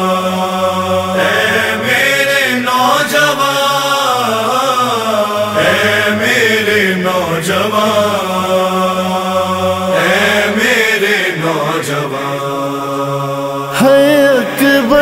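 Slow chanted vocal backing of a Shia noha: layered voices holding a steady low hum beneath a wavering chanted melody, with no clear words. Just before the end a louder solo voice comes in.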